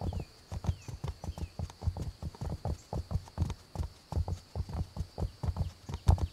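Rhythmic clopping of hard footfalls, about four a second, on a hard surface. A faint steady high tone and a few short chirps sit behind them.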